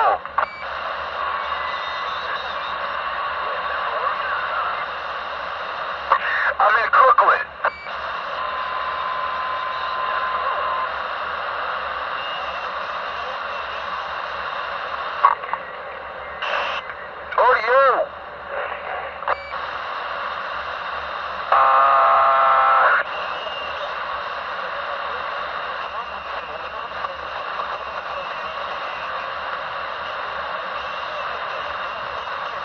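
CB radio receiver hissing with steady static through its speaker, broken by short garbled, warbling transmissions about six seconds in and again near eighteen seconds. A buzzing tone lasts about a second and a half, starting around twenty-two seconds in.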